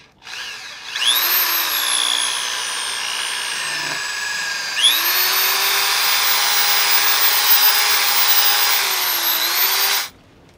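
Corded electric drill boring into the end of a wooden log: the motor spins up and its whine sinks in pitch as the bit bites into the wood. It stops briefly about four seconds in, then runs again steadily and cuts off near the end.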